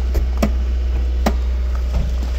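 A few sharp clicks and knocks as a hand handles the seat base and runners inside the car, over a steady low rumble.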